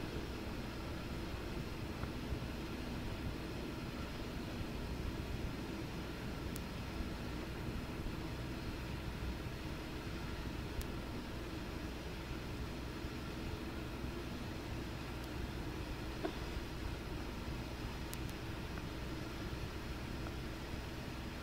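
Steady hiss and low hum of an old cassette tape recording with faint room tone and no speech, broken only by a few faint ticks.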